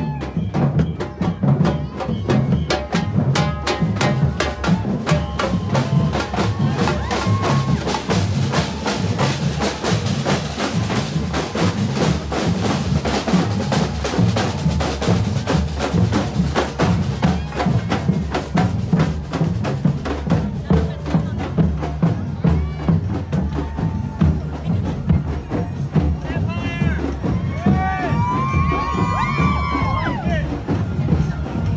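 Street drum line playing a steady rhythm on large bass drums struck with mallets, with sharp snare-drum strokes over them.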